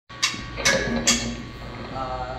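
Three sharp clicks, evenly spaced a little under half a second apart, each ringing briefly, with a short low tone around the third.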